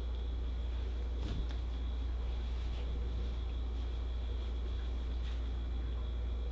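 Steady low room hum with a faint high whine, and a couple of soft rustles of a cotton hoodie being handled and held up, about a second in and again near the end.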